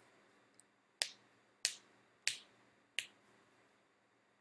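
Four sharp clicks, evenly spaced about two-thirds of a second apart, each with a short fading tail.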